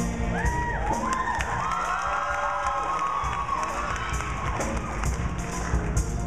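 Audience cheering and whooping, strongest over the first four and a half seconds and then fading, over a live band's drums and bass.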